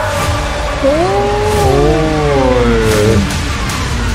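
Dramatic film-trailer score playing back: a deep, steady low drone with a wavering melodic line laid over it from about a second in until about three seconds in.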